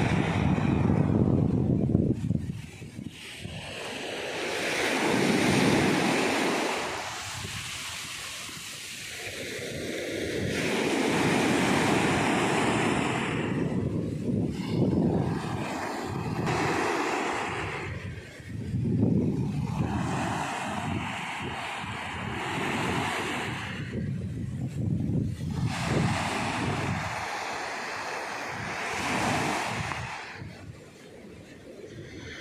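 Ocean surf breaking and washing up a sandy beach, the roar of the wash swelling and ebbing in surges a few seconds apart.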